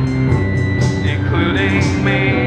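Post-punk band playing live: a drum machine beat under bass guitar and a synthesizer keyboard, with a steady, sustained bass line and held synth tones.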